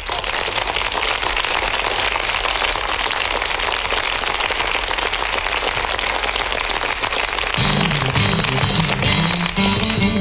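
Studio audience applauding steadily. About three-quarters of the way through, music comes in under the clapping.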